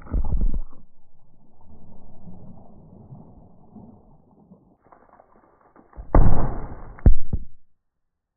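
A .40-calibre Glock 23 pistol fired underwater in a plastic tub, heard slowed down: a deep, muffled boom with water surging, a lower rumble fading over the next few seconds, then another loud boom about six seconds in that ends in a sharp crack.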